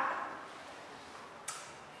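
Quiet room tone in a pause between words, with one faint short click about one and a half seconds in.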